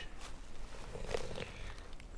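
Faint rustling and small crinkling ticks of a small packet of fishing hooks being handled and opened, over a low steady rumble.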